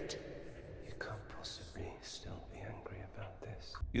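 Faint whispered speech, a low murmur of voice.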